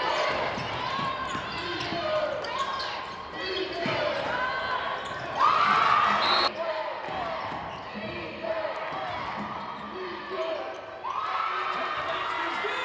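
Basketball game sound on a hardwood court: a ball bouncing amid players' and crowd voices. A louder burst of voices about five and a half seconds in cuts off suddenly a second later.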